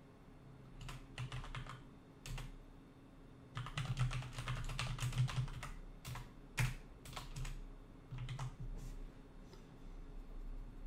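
Typing on a computer keyboard in irregular bursts of keystrokes, with a longer run of fast typing in the middle and short pauses between.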